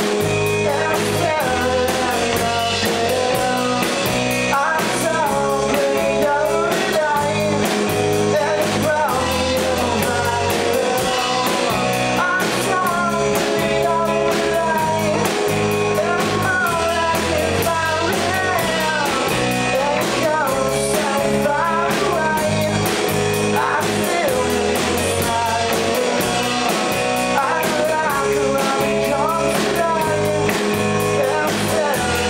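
Live rock band playing a song: guitar and singing over bass and drums, at a steady level throughout.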